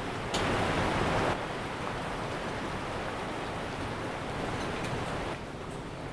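Steady hiss of background noise, with a louder rush of noise about half a second in that lasts about a second.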